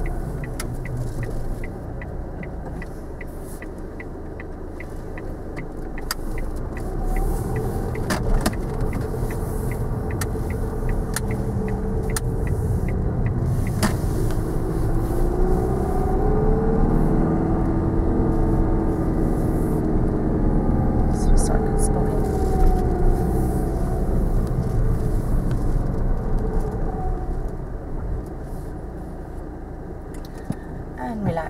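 Car engine heard from inside the cabin as the car drives on, with a regular ticking of the turn indicator over the first several seconds. In the second half the engine pitch rises and falls as the car accelerates and changes gear.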